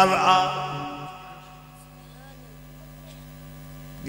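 A man's chanted line trails off through a PA system in the first second. Then a steady low electrical hum from the sound system carries on alone until the chanting resumes.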